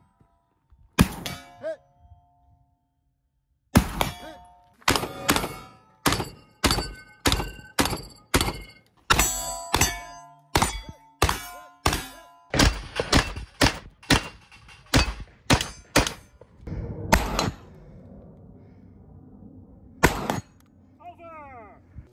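Saricam SS-4 semi-automatic shotgun fired in quick strings, about two shots a second, with a brief pause early on and one last shot near the end. Some shots are followed by the short ring of steel targets being hit.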